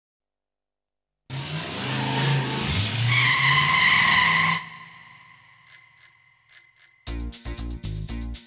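Song-intro sound effects: a noisy vehicle-like rush with a steady squealing tone that cuts off suddenly, then a bicycle bell rung twice in quick double rings, followed by the start of a rhythmic music beat near the end.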